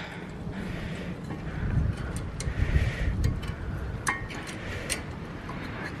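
A few light metallic clicks and taps as new brake pads are pressed into the front caliper bracket, one with a brief ring about four seconds in, over a low steady rumble.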